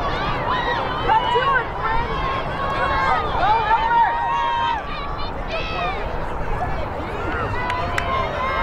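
Several girls' voices shouting and calling out across a lacrosse field, overlapping and indistinct, with one call held for about a second midway. A steady low rumble runs underneath.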